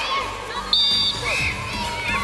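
Children shouting and cheering around a football pitch, with one short, loud referee's whistle blast under a second in.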